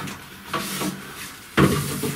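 A wooden folding clothes drying rack being unfolded: its wooden frame parts knock and rub against each other, with two lighter knocks early and a loud wooden knock about one and a half seconds in as the rack opens out.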